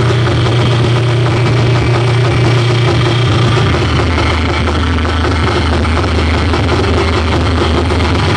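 Live electronic noise music: a loud, unbroken wall of dense, hissing noise over a steady low drone, played on electronics and a mixer.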